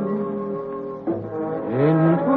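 Tenor singing a song with orchestral accompaniment: a long held note gives way to a short brass-led orchestral passage, and a rising note leads into the next sung phrase near the end.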